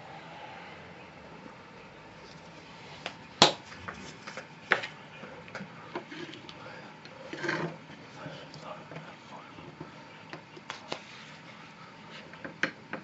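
Scattered light clicks and taps from handling painting gear at the easel, the loudest about three and a half seconds in and another a second later, with a brief rustle near the middle.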